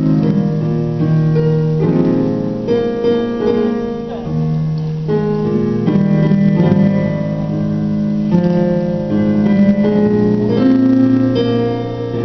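Slow keyboard music of held chords that change every second or two.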